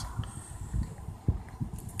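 Low rumble inside a car cabin crawling in stop-and-go traffic, with a few soft low thumps.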